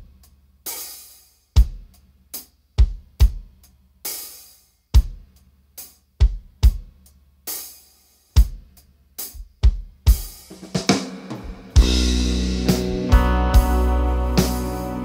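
Drum kit playing a sparse groove on its own, with kick drum, snare and cymbal hits spaced by short gaps, opening a prog-rock song. About ten seconds in the hits grow denser into a fill. Near the end the full band comes in with a sustained bass note and held chords.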